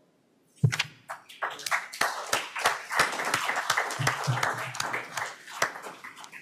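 Audience applauding: many hand claps start about half a second in and die away near the end.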